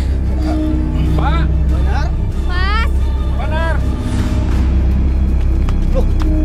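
Dramatic background score: a loud, steady low drone with long held tones. Over it, a few short pitched calls of a voice come in the first half, then stop.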